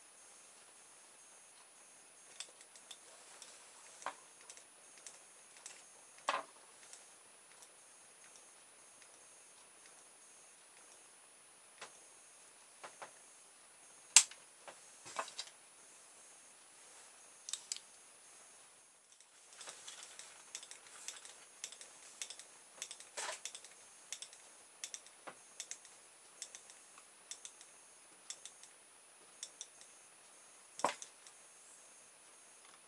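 Scattered sharp clicks and ticks from a small metal tool prodding the open-air reed switch of a homemade pulse motor to free its contacts, which keep welding shut from arcing. A run of quicker, irregular ticks comes in the second half, and the loudest single click falls about halfway through.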